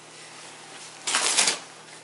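A dog tearing and crinkling a paper padded mailing envelope with its teeth: one loud crackling rip about a second in, lasting about half a second.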